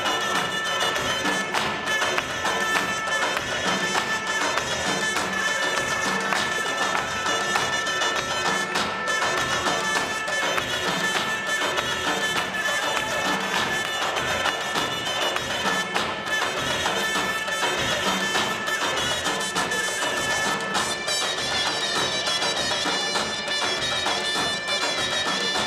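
Armenian folk dance music led by a reed wind instrument playing a melody over long held, droning tones.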